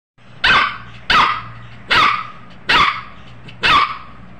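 A spitz-type puppy barking: five sharp barks, evenly spaced a little under a second apart.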